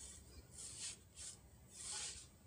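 Fingertip swiping across a phone's glass touchscreen while scrolling: three short, faint swishes of skin rubbing on glass.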